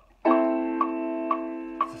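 RockJam RJ761 61-key electronic keyboard sounding a chord that starts about a quarter second in and is held, fading slowly with sustain on. The keyboard's metronome clicks along about twice a second.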